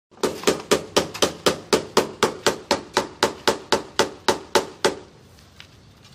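A hammer tapping the sides of a steel column formwork in an even rhythm of about four blows a second, each with a short metallic ring, to compact the fresh concrete inside in place of a vibrator. About twenty blows, stopping about five seconds in.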